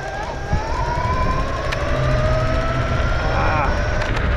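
Dualtron Storm electric scooter's dual hub motors whining under hard acceleration, the pitch rising steadily as speed climbs, over wind and road rumble.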